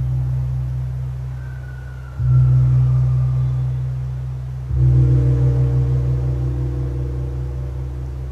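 A large, deep-toned gong struck three times, about two and a half seconds apart, each stroke ringing on and dying away slowly. It marks the elevation of the chalice at the consecration of the Mass.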